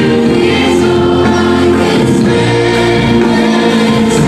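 Live worship band playing a praise song: two women singing into microphones over bass guitar, electric guitar and keyboards, steady and loud.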